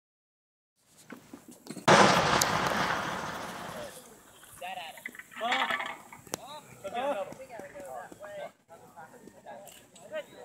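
A cannon shot about two seconds in: one sharp blast whose report rolls away and fades over about two seconds. Men's voices follow.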